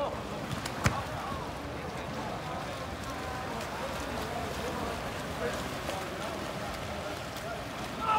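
Water polo players swimming and splashing across a pool, with faint distant voices and one sharp knock about a second in.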